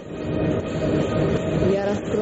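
Rumbling sound-effect drone with a few steady tones from a TV programme's opening titles.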